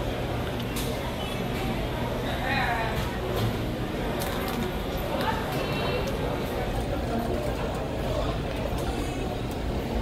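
Airport terminal room noise: a low steady hum under indistinct background voices, louder about two and a half and five seconds in.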